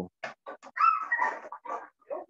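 A string of short, high-pitched animal vocal sounds, with a longer whine that rises and falls about a second in.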